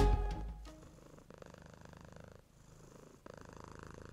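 The last notes of a short piano logo jingle dying away in the first second, then a faint cat purr in two stretches with a short break between them.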